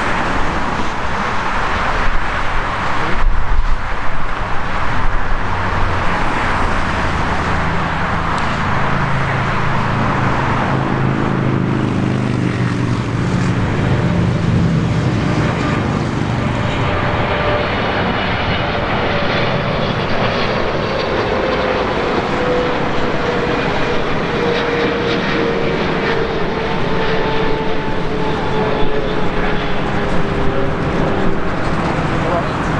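Jet engines of a Boeing 777-300ER (GE90 turbofans) on final approach: a loud, steady rushing noise with a low hum in the middle. In the second half a whine slowly falls in pitch.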